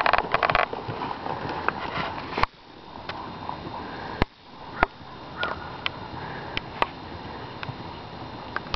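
A horse being ridden at a slow jog on arena sand, heard as light, irregular clicks and knocks of hooves and tack over steady outdoor background noise. A quick fluttering run of clicks comes at the very start.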